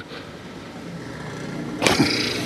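Street traffic: a road vehicle passing, its sound growing gradually louder. A short sharp noise comes near the end.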